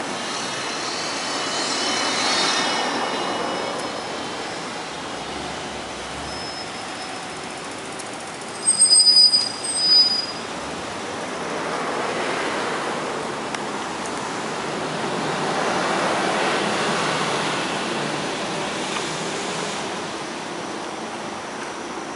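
Road traffic passing on a street: a broad rush that swells and fades several times as cars go by. Two short, loud high-pitched bursts come about nine and ten seconds in.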